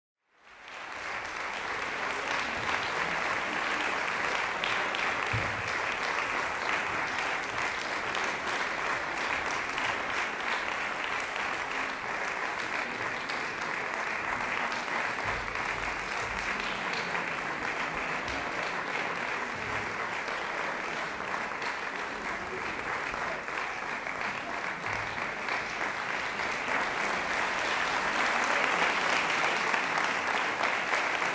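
Audience applauding steadily, the clapping growing a little louder near the end.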